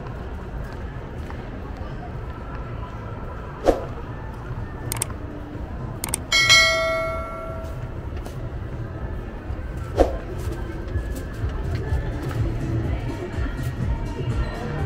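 A click, then a single bell-like ding that rings out for about a second: the sound effect of an on-screen subscribe-button animation. It plays over steady background noise of people and voices, with two other sharp knocks, one a couple of seconds before the ding and one a few seconds after.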